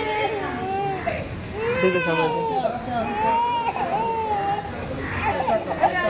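An infant crying hard in long, rising-and-falling wails while her head is shaved with a razor. The wails break into shorter, choppier sobs near the end.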